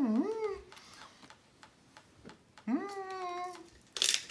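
A person's voice ending a wavering hummed "mm-hmm", then a second short pitched call about three seconds in that rises and holds level.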